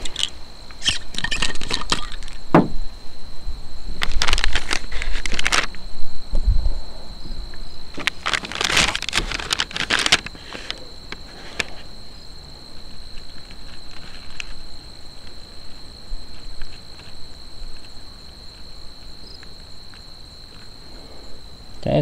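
Thin plastic flameless ration heater sleeve crinkling and rustling as it is handled, in three louder bursts over the first ten seconds, then only faint scattered ticks while water is poured into it. A steady high-pitched tone runs underneath.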